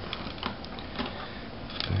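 Handling noise from an opened-up netbook being shifted on a table: a few faint plastic clicks and knocks over a steady background hiss.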